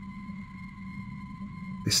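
Low ambient drone with a few steady held tones over a soft rumble, the dark background bed under a horror narration; a narrator's voice comes in right at the end.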